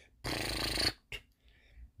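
A man's quick, breathy intake of breath close to the microphone, lasting under a second, followed by a small mouth click.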